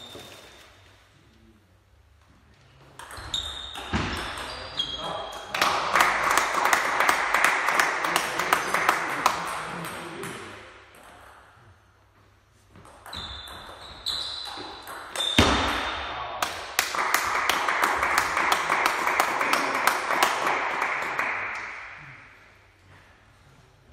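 Two table tennis rallies: the ball pings sharply off bats and table in quick exchanges, each hit ringing briefly. Each rally is followed by several seconds of louder voices in a large hall.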